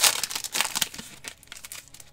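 Plastic wrapper of a 2014 Donruss basketball card pack crinkling as hands pull and tear at it to get it open, loudest in the first moment and dwindling to scattered crackles.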